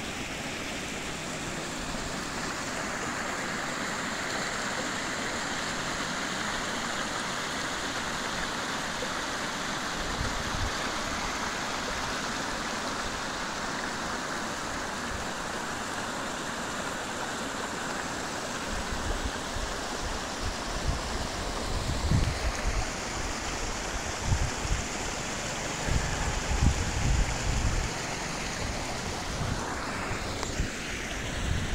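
Shallow stream water running and rippling over stones in a steady rush. From about two-thirds of the way in, irregular low rumbling thumps hit the microphone.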